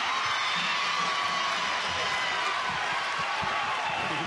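Home basketball crowd cheering steadily after a made free throw puts their team in front, a dense wash of many voices with shouts.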